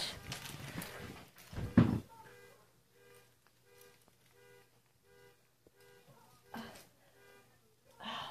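A brief sound, voice-like, under two seconds in, then faint electronic beeping at about two beeps a second that stops shortly before the end.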